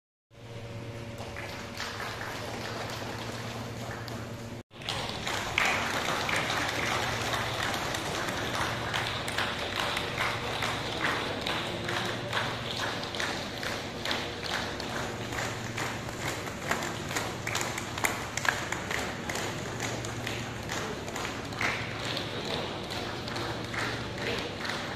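A crowd applauding: a long, steady run of many hands clapping over a low hum. The sound cuts out briefly at the very start and again about five seconds in.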